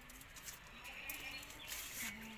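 Faint calls of a farm animal, a few low held notes about half a second long each, with a few light clicks.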